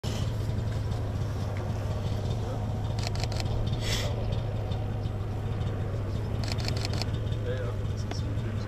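Microlight paramotor engine running steadily with a low hum, with a few brief hissy bursts and quick clusters of clicks over it.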